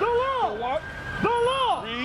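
A man's voice talking loudly, with a faint, drawn-out siren tone behind it that slowly rises and then falls.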